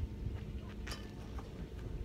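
Wind rumbling on the microphone on an open grass field, with a faint, distant smack about a second in as the football reaches the goal.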